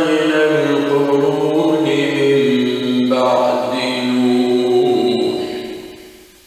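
A man reciting the Quran in a slow melodic chant, drawing out long held notes. The phrase fades out near the end.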